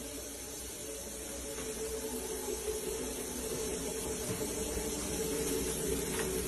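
Water running with a steady hiss and a faint hum, slowly getting louder.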